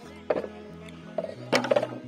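Background music, with a couple of short wooden knocks from bamboo gate poles being lifted and moved, one just after the start and one past the middle.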